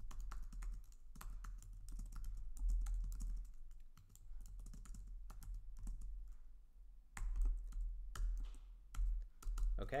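Typing on a computer keyboard: irregular runs of key clicks, sparser in the middle stretch, over a low hum.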